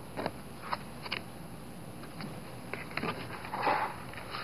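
Hands working glued fabric onto cardboard with a plastic spatula on a cutting mat: faint scattered taps and scrapes, with a short rustle near the end.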